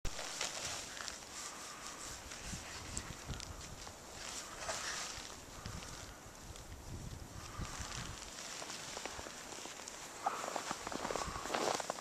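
Soft, irregular crunching and shuffling of a child moving through deep snow: crawling, getting up and trudging in snow boots.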